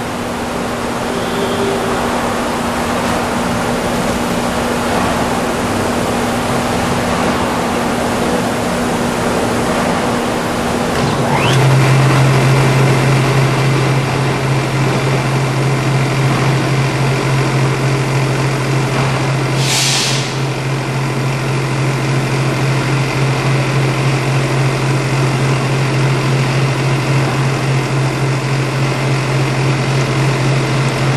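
Steady mechanical hum and whir; about a third of the way in, the liquid-solids bar of a Patterson-Kelly stainless steel twin shell mixer starts up, and its electric drive settles into a steady, lower, stronger hum as the bladed bar spins inside the empty stainless shell. A brief hiss sounds about two-thirds of the way through.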